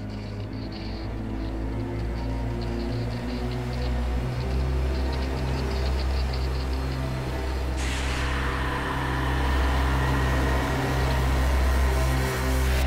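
Horror trailer score: a low, steady droning bass with faint high ticks above it, joined about eight seconds in by a loud hissing noise swell that builds toward the end.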